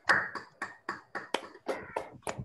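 Scattered applause from a few people clapping over an online video call, sharp irregular claps about five a second.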